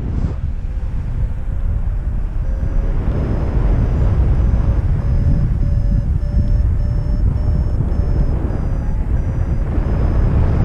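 Wind rushing over the microphone in flight, with a paraglider's variometer beeping about twice a second from a couple of seconds in, its pitch creeping up and then easing back down. A beeping variometer is the climb tone that signals the glider is rising in lift.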